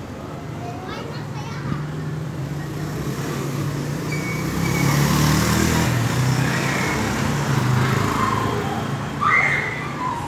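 A motor vehicle's engine in street traffic, growing louder to a peak about halfway and staying fairly loud, with indistinct voices in the background.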